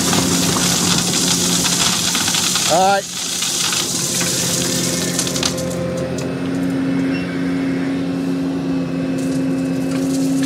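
Gravel pouring from a Volvo excavator's bucket into a concrete-form footing, a steady hissing rattle that cuts off about three seconds in with a short rising whine. Then the excavator's engine runs steadily, with a few light clicks.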